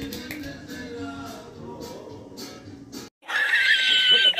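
Background music for about three seconds, then a sudden cut to a brief silence. Near the end a man's loud, high-pitched squealing laugh comes in.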